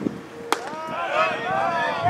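A fastball smacking into the catcher's leather mitt: one sharp pop about half a second in, with voices chattering in the background.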